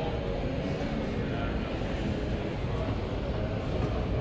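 Steady low rumble and faint background chatter of a large indoor showroom.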